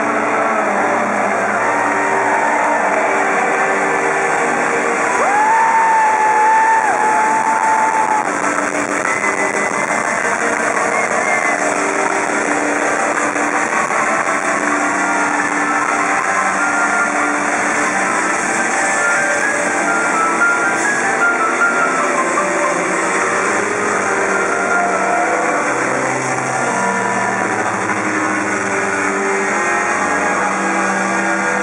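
Live rock band playing loud and distorted, with a bass line underneath and a high lead line that slides between notes about five to eleven seconds in.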